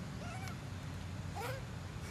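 Young macaque giving two short, high, meow-like calls: one about a quarter second in, and a second that falls in pitch about a second and a half in, over a steady low rumble.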